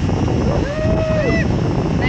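Wind buffeting the microphone, a steady low rumble, with a faint voice about half a second in.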